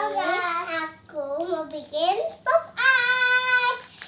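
A young child singing in a sing-song voice, ending with one long held high note near the end.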